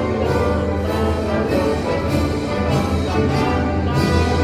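Orchestral pre-match anthem with strings and brass, played loud over a stadium's loudspeakers.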